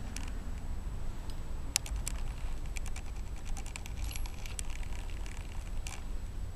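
Light, scattered clicks and taps of a digital caliper's metal slide being extended and its depth rod set into a brass cartridge case's primer pocket, over a low steady hum.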